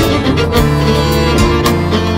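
Instrumental folk-band passage without singing: fiddle melody over electric bass and hand percussion striking a regular beat.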